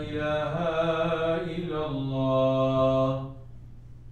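A man's voice chanting in long, drawn-out notes that shift slowly in pitch, stopping about three seconds in.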